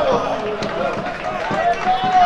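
Several men's voices shouting and calling out over one another across a football pitch during play.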